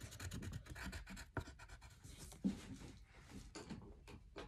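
Crayon scratching on paper in quick, short back-and-forth strokes as small areas are coloured in, with a sharper tap about a second and a half in and a louder knock about two and a half seconds in.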